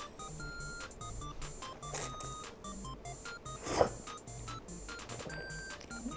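Light electronic background music of short, bleeping notes over a stepping bass line. Two brief eating noises come through it from a mouthful of noodles, a faint one about two seconds in and a louder one a little before four seconds in.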